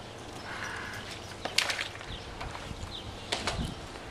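A pool skimmer net on a long pole being handled at the edge of the pool: two sharp clattering knocks, the louder about a second and a half in and another with a dull thud near the end, as the pole and net meet the deck. Faint bird chirps behind.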